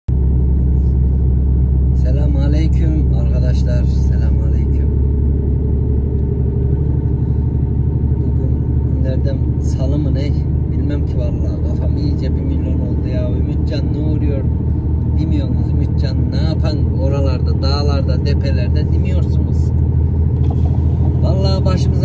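Lorry's diesel engine droning steadily inside the cab while on the move, with a voice talking now and then over it.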